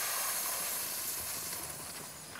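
A woman's long, hissing inhale drawn through a curled tongue in the yogic cooling breath (the 'cooler'), fading slowly toward the end.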